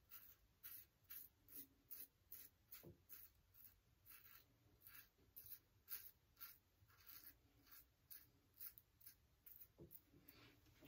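Faint, quick scrapes of a Mühle R89 double-edge safety razor with a Shark Platinum blade cutting stubble through thin lather, about two short strokes a second, during touch-up passes.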